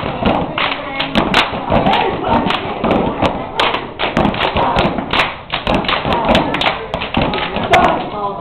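Step team stomping and clapping, a dense run of sharp thuds and slaps from feet and hands, with voices over the stomps.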